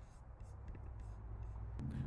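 Quiet gap of faint background noise with a few soft ticks, the level rising slowly towards the end.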